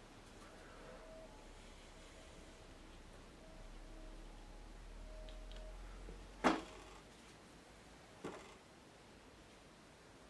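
Quiet room tone broken by two short, sharp knocks, a louder one about six and a half seconds in and a fainter one near eight seconds in.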